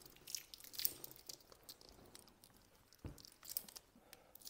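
Faint crinkling and small clicks of protective plastic film being peeled off a new wristwatch by gloved hands, with a soft thump about three seconds in.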